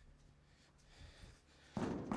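Mostly quiet outdoor ambience, then near the end a sudden metallic bang as a gloved hand strikes a bolted sheet-steel panel boarding up a building, ringing on as it fades.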